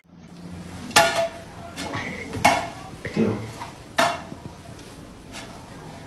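Metal clanking: three sharp clanks about a second and a half apart, each with a short ring, and fainter knocks between them.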